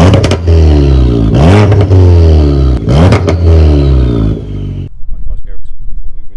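Ford Fiesta ST's turbocharged four-cylinder engine revved hard in repeated throttle blips. Each rev climbs quickly and then falls back, and the engine cuts off suddenly about five seconds in.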